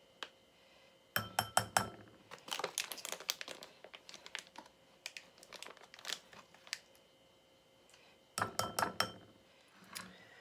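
Thin plastic bag of egg replacer powder crinkling as it is handled, in several short bursts, with light clinks of a metal spoon against a ceramic bowl.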